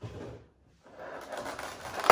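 Clear plastic packaging insert rustling and scraping as hands handle it: a short burst at the start, then a longer patch through the second half.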